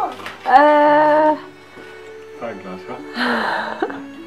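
A child's high, excited vocal note held for about a second, followed about three seconds in by a short burst of gift-wrap paper rustling as a present is unwrapped, over soft background music.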